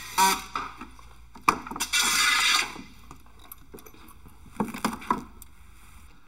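Cordless drill driving screws through aluminum heat-transfer plates into the underside of the subfloor, in short bursts with clicks between them; the longest run comes about two seconds in.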